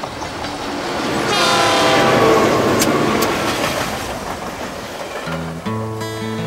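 Diesel freight train passing: its rumble builds and fades, and the locomotive's horn sounds from about a second in, its pitch sagging slightly as the train goes by. Acoustic guitar music comes in near the end.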